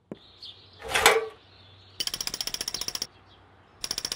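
Woodpecker drumming on a tree trunk: two rapid runs of pecking at about twenty strikes a second, the first lasting about a second from halfway through, the second starting near the end. About a second in, a short loud rushing sound.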